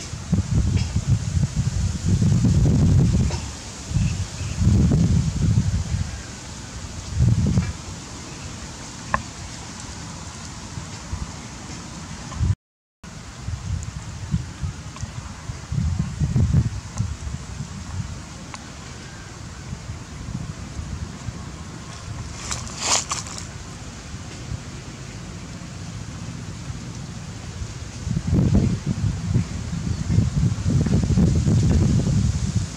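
Wind buffeting the microphone in repeated low gusts, with leaves rustling. There is a short dropout just before halfway, and a brief sharp higher sound about three-quarters of the way through.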